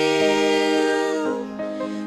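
Vocal trio of two women and a man singing a held chord in harmony through microphones, thinning out and softening about a second and a half in.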